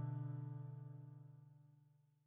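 The final chord of a song, played on acoustic guitar, rings out and fades away, dying out near the end.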